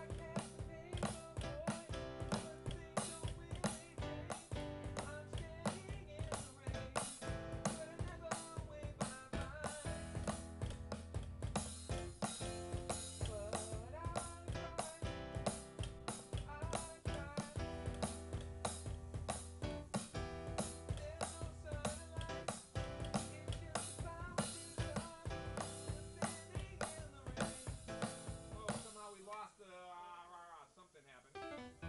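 A small band playing a song: a drum kit keeping a steady beat, keyboards with a sustained bass line, and a singing voice. The music breaks off suddenly about a second before the end.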